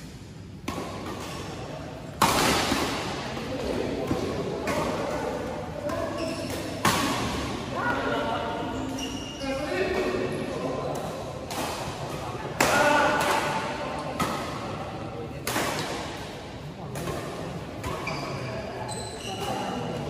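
Badminton racket strings hitting the shuttlecock in doubles rallies: sharp smacks at irregular intervals, the hardest about 2, 7, 12 and 15 seconds in, echoing around a large hall. Players' voices can be heard between the shots.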